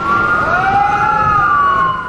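Emergency vehicle siren wailing: several tones at once start suddenly, rise briefly, then slide slowly down in pitch over about two seconds.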